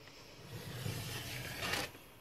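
Paper being cut with the sliding blade of a rail trimmer drawn along a ruler through a sheet of scrapbook paper: one steady scrape about a second and a half long, loudest just before it stops.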